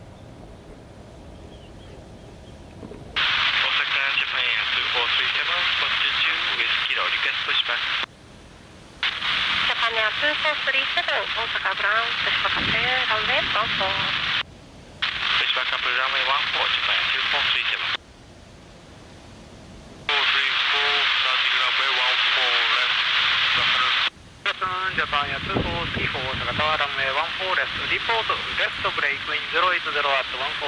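Air traffic control radio chatter on an airband receiver: hissy, narrow-band voice transmissions that key on and off abruptly, starting about three seconds in and running as several transmissions with short breaks between them.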